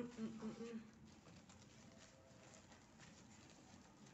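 A woman's voice sounds briefly in the first second. After that comes faint, irregular rustling of fabric ribbon bows being handled and gathered together.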